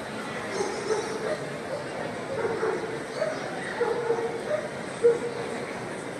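Dogs barking and yipping in short calls over a background of crowd chatter, the loudest bark about five seconds in.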